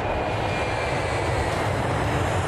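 Steady roar of a jet aircraft engine with a faint high whine.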